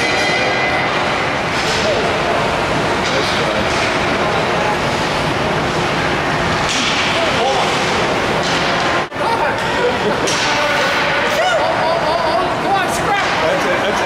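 Ice hockey game heard from the stands: spectators' voices and shouts over a steady arena din, with sharp cracks of sticks and pucks striking each other and the boards. The sound breaks off for an instant about nine seconds in.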